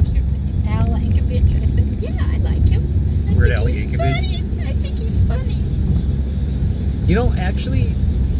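Steady low rumble of a car driving, heard from inside the cabin, with brief snatches of voices over it.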